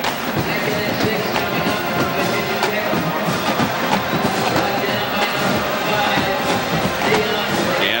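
Music playing in a football stadium over a steady background of crowd noise, heard through a television broadcast.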